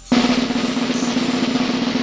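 Snare drum roll sound effect that starts suddenly and holds at a steady, loud level, building suspense before the light is switched on.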